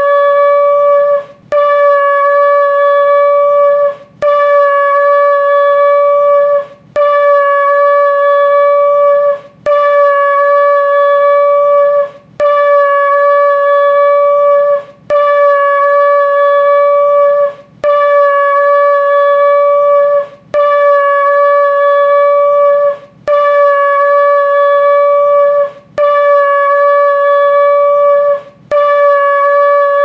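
A long spiralled horn shofar blown in a series of long, loud blasts, each holding one steady note for about two and a half seconds, with a brief breath between blasts, about eleven in a row.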